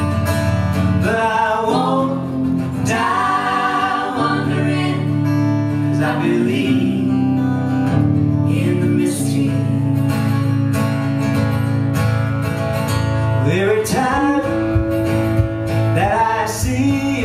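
Live acoustic band music: strummed acoustic guitars over a bass guitar line, with singing that comes and goes.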